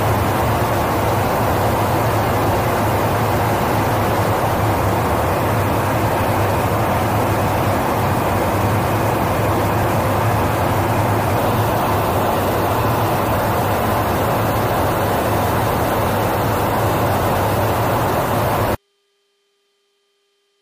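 Loud, steady rush of engine and airflow noise inside a KC-135 Stratotanker's boom operator pod in flight. It cuts off suddenly near the end, leaving only a faint hum.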